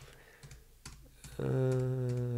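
A few isolated, faint taps on a computer keyboard during a quiet stretch.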